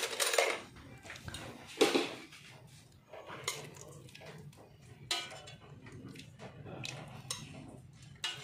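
Metal cookware and utensils clinking and clattering in a few separate knocks, the loudest about two seconds in.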